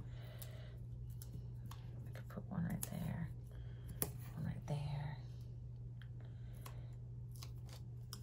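Light paper-and-sticker handling: small heart stickers peeled off a sticker sheet and pressed onto a planner page, with a few soft clicks and taps. A mumbled voice comes in briefly twice, over a steady low hum.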